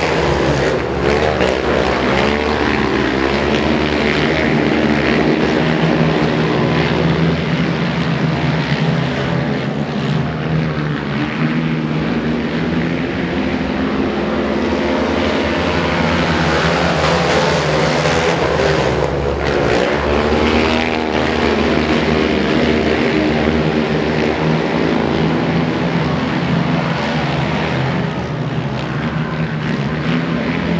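Several speedway racing quads' engines running hard as the quads race round the track, the mixed engine notes rising and falling together through the corners and straights.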